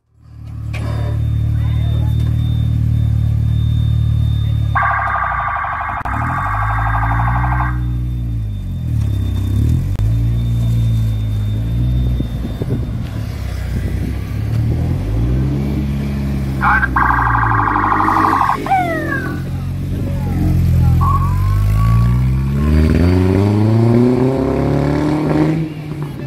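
A custom trike's engine idles steadily, then revs up and down several times as it pulls away, with a long rising rev near the end. Twice, for a couple of seconds each, a warbling electronic alarm tone sounds over the engine.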